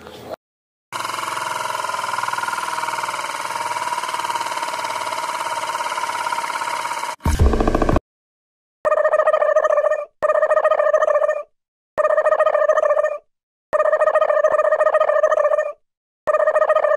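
Edited-in electronic sound: a sustained musical sound for about six seconds, a short burst, then a pitched electronic tone ringing in repeated bursts of about a second and a half with brief silent gaps, like a phone ringtone.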